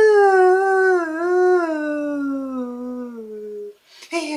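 Unaccompanied male voice singing one long wordless note with vibrato, sliding slowly down in pitch and fading out shortly before the end.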